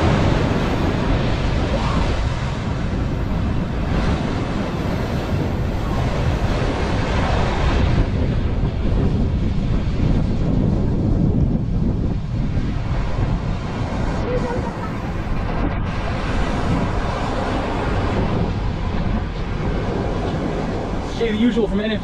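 Strong tropical-storm wind gusting on the microphone over heavy surf breaking against the seawall and rocks. A voice starts in the last second.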